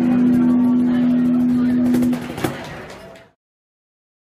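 A guzheng, electric guitar and cajon trio ending a piece: one final note is held for about two seconds, then dies away with a last cajon hit, and the sound cuts off abruptly.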